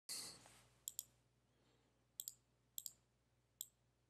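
Near silence broken by faint clicks of a computer mouse button, in four groups, mostly quick pairs. A low steady hum sits underneath.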